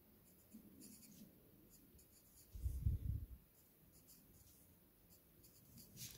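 Pencil scratching on graph paper in short faint strokes as small figures are written, with a soft low thump about three seconds in.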